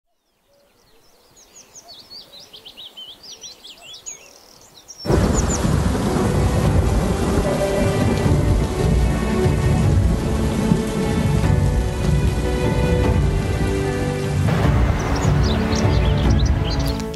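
Birds chirping faintly, then about five seconds in thunder and heavy rain come in suddenly and loud, with a sustained music score underneath.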